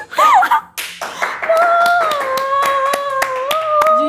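Hands clapping in quick, uneven claps. One voice holds a long, high squealing note over them, after a brief yelp at the start.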